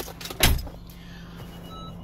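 A single dull thump about half a second in, after a few light clicks, over the steady low hum of a car's cabin.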